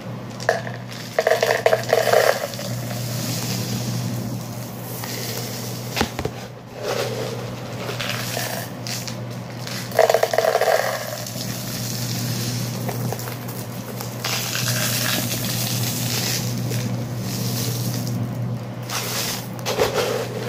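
Dry beans and rice pouring and rattling between plastic containers, a steady rushing patter with louder spells about a second in and again about ten seconds in.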